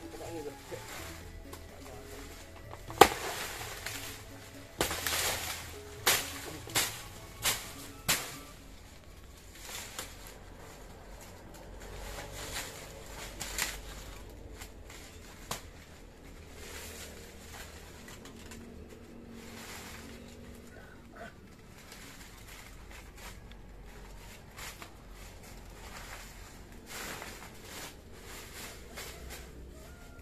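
Machete blows chopping through a banana plant: one loud sharp strike about three seconds in, then about five more over the next few seconds. After them comes quieter rustling and footsteps through undergrowth.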